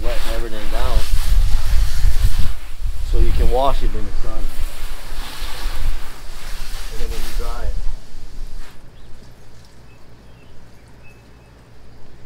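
Garden hose spraying a mist of water over a car, mixed with wind rumbling on the microphone. The spray noise stops about eight seconds in.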